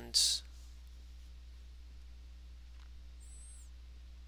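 Quiet room tone with a steady low hum through a pause in the talking. A short breathy hiss comes just after the start, and a faint high chirp about three seconds in.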